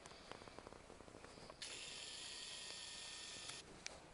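A camcorder's zoom lens motor whirring as the lens zooms out: a steady high whine that starts suddenly about a second and a half in and stops about two seconds later, after a few faint handling clicks.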